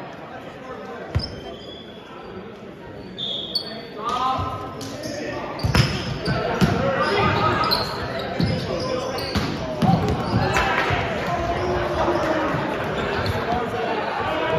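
Volleyball rally in a large gym: sharp slaps of hands on the ball, a few early and then several in quick succession from about halfway in, over echoing shouts and chatter from players and onlookers.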